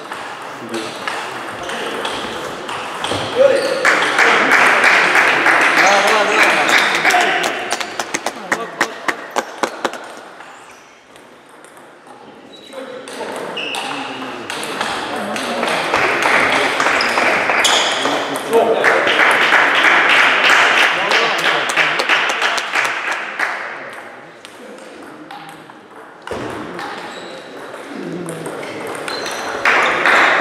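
Table tennis rallies: the celluloid ball clicking off bats and table, with a quick, even run of hits about eight to ten seconds in. Between rallies there are louder stretches of voices and noise in a large hall.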